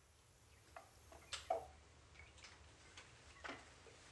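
Faint, sparse clicks and knocks of a long wooden ladle against a ceramic pot and a small bowl as food is scooped out and served. The loudest knock comes a little over a second in.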